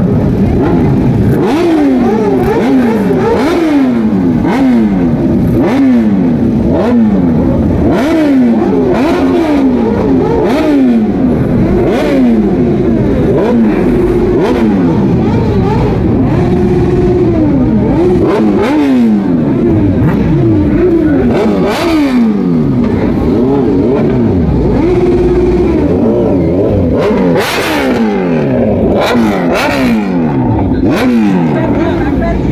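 Sport-bike engines, among them a green Kawasaki Ninja's, being revved hard again and again. Each blip rises sharply in pitch and falls back, about one every second or two, with several engines overlapping and the revs held briefly a few times.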